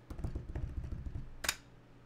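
A quick drumroll of rapid, dull thumps for about a second, ending with one sharp hit about a second and a half in. It is the build-up before a reveal.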